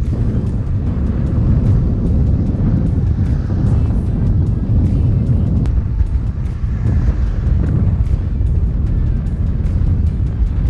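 Wind buffeting the microphone of a bike-mounted camera, with a steady low rumble from a road bike rolling along the road. Music plays underneath.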